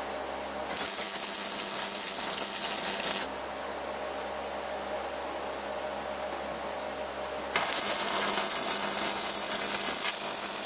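Electric arc welding on steel box section: two crackling weld runs, the first about two and a half seconds long starting under a second in, the second starting about two and a half seconds before the end and still going, with a quieter pause between.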